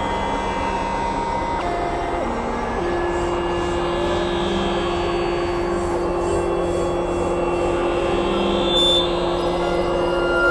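Experimental synthesizer drone music: a dense, noisy drone under held synth tones that step from pitch to pitch, settling about three seconds in on one long, low held note.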